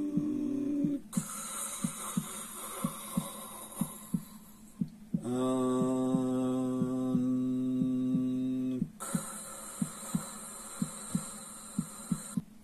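Steady heartbeat thumps, about two a second, under a long breathy hiss of yogic full breathing. About five seconds in, a man's voice holds one low chanted mantra note for about three and a half seconds, then the breathing hiss returns.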